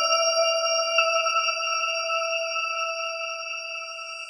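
New-age electronic music: a chime-like synthesizer tone, several pitches sounding together, struck at the start and again about a second in, then ringing on and slowly fading.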